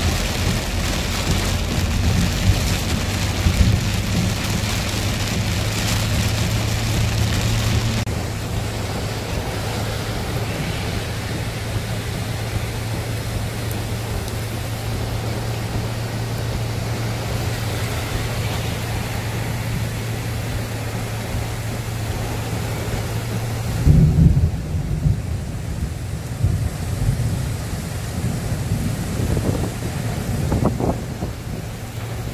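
Heavy rain hissing steadily over the low drone of a vehicle driving through it. About eight seconds in the hiss drops away, and from about 24 seconds on there are irregular low rumbling surges.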